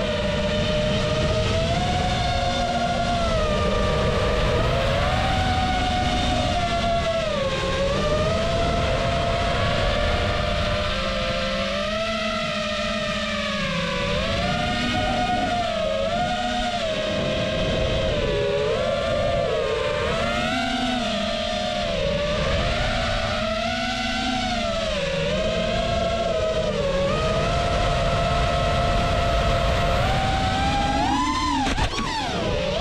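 Multirotor drone's motors and propellers whining, the pitch sliding up and down continuously as the throttle changes.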